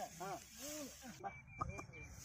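A person's voice in a run of short rising-and-falling syllables over a steady hiss. About a second in it gives way to a few sharp clicks and a faint high steady tone.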